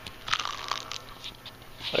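Faint rustling and crinkling handling noises, a scatter of small crackles, with a man's voice starting right at the end.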